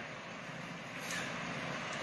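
A pause in the talk, filled only by low, steady background noise: an even hiss with no distinct events.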